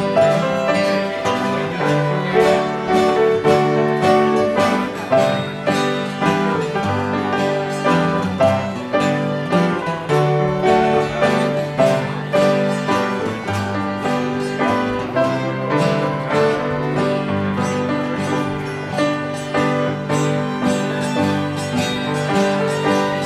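Instrumental music: a fiddle, an acoustic guitar and a piano playing a tune together, the guitar strumming a steady beat under the fiddle's held notes.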